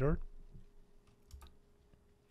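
A few faint computer clicks about a second and a half in, as the presentation is advanced to the next slide, over a faint steady hum.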